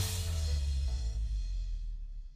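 Background music ending on a final drum and cymbal hit, which rings out with a deep bass tail and fades away over about two seconds.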